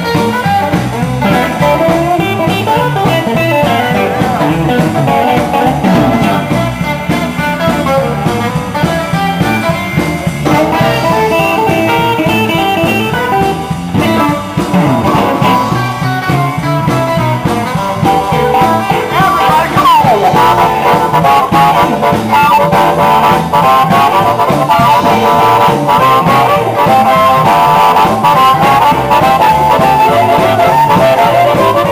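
Live blues band playing an instrumental break between vocal verses, with guitar to the fore. About twenty seconds in, a long note slides down in pitch, and the band plays a little louder after it.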